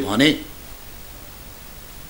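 A man's voice says one short word, then pauses; a steady hiss from the recording fills the pause.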